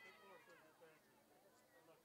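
Faint, distant high-pitched shouts and calls from players on the pitch, thinning out about a second in.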